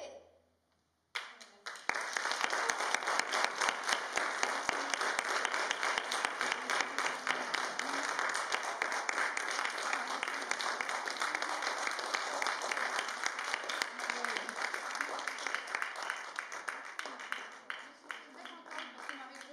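Applause: many people clapping, starting suddenly about a second in after a brief silence, holding steady and dying away near the end.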